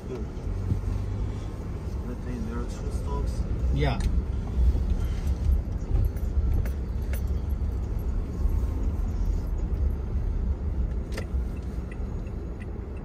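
City street ambience: a steady low rumble of road traffic with cars moving nearby, and a short voice about four seconds in.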